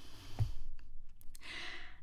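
A woman sighs out, with a soft thump about half a second in, then draws an audible breath near the end.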